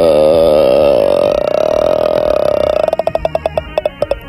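A long, drawn-out vocal note, wavering in pitch and then held, that breaks near the end into a rapid stuttering rattle.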